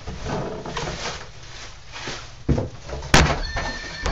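Styrofoam packing rustling and squeaking as it is pulled from the box and tossed, then a thud and a sharper, louder knock as it hits a child's electronic toy horse. Near the end the toy, set off by the hit, starts its own electronic sound with a few steady tones.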